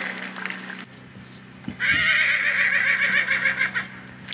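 A horse whinnying once, a quavering call of about two seconds that begins a little under halfway in.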